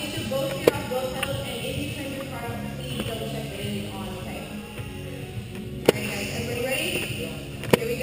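Background music and indistinct voices echoing in a large indoor hall, with three sharp knocks: one under a second in, one about six seconds in and one just before the end.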